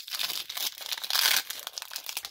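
Foil wrapper of a Pokémon Sword & Shield booster pack being torn open and crinkled in the hands, a dense crackle that is loudest a little past a second in.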